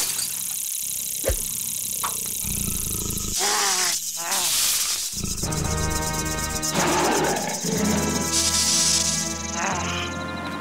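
Cartoon soundtrack: background music with a cartoon cockroach character's wordless vocal sounds, loudest about three to four and a half seconds in and again around seven to eight seconds in.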